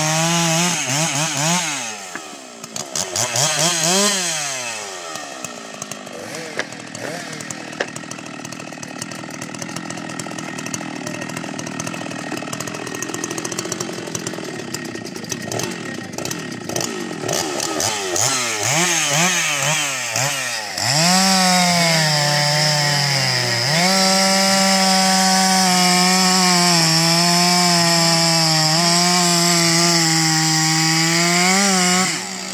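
Stihl MS 066 two-stroke chainsaw (91 cc) running at full throttle in a cut, then dropping back to idle with a few throttle blips for most of the middle. About two-thirds of the way through it revs up and runs at full throttle again, its pitch dipping briefly before holding steady.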